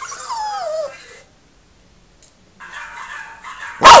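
A Yorkshire terrier's whining howl falling in pitch during the first second, then a pause and a fainter stretch of dog sounds through a computer speaker. Just before the end comes a sharp knock, and the terrier breaks into a loud, wavering howl.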